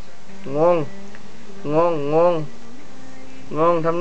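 An adult crooning a nasal, sing-song 'ngong-ngong' to a baby, teasing its puzzled face. The syllables are drawn out and wavering, in three short spells with pauses between.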